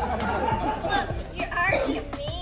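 Several people's voices chattering over background music with a steady low bass.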